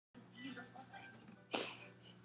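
A person's short, sharp breathy burst, like a sneeze or snorting exhale, about one and a half seconds in, fading within a few tenths of a second after faint low sounds.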